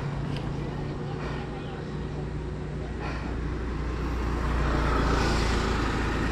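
Motor vehicle traffic on the road, a steady low engine rumble that swells from about halfway through as a motorcycle approaches.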